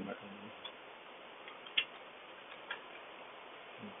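A few scattered clicks of a computer keyboard and mouse over a steady background hiss, the sharpest a little under two seconds in.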